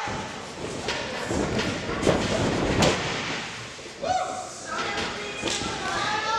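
Wrestlers' bodies hitting the ring mat: a few sharp thuds, the strongest about two and three seconds in, with a voice calling out about four seconds in.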